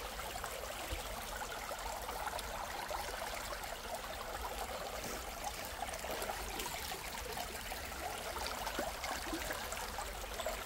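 Shallow stream running over stones and a low ledge, a steady trickling rush of water.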